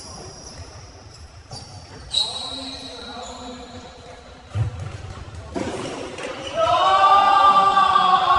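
A futsal ball kicked and struck on a hardwood gym floor in a large echoing hall, with sharp hits about two seconds in and again about four and a half seconds in, and high shoe squeaks. Near the end a loud, drawn-out shout from a player.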